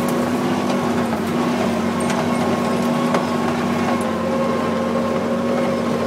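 1942 Dodge WC21 weapons carrier's flathead straight-six engine running at a steady pitch as the truck drives off-road, with a few light knocks and rattles.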